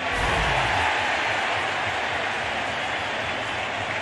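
Steady noise of a large stadium crowd, with a brief low thud at the very start.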